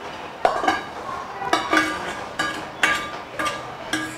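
A metal spoon scrapes and clinks against a non-stick pan and a steel pot as paneer cubes are pushed out of the pan into the gravy: a run of sharp clinks, about two a second.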